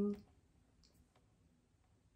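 The tail of a woman's word, then near silence with a few faint, small clicks around the middle.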